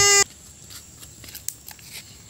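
A child's drawn-out whining cry on one steady pitch, breaking off a quarter second in. A faint background with a few small ticks follows.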